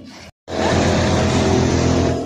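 Soybean thresher running loud and steady close up, with a constant low hum and the rush of threshed beans pouring from its outlet. The sound cuts out completely for an instant about a third of a second in, then comes back at full level.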